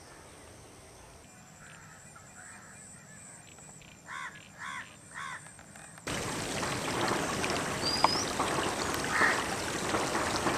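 A bird calls three times in quick succession about four seconds in, over faint outdoor background. About six seconds in the background jumps to a louder, steady outdoor hiss, with one short, high, rising bird chirp.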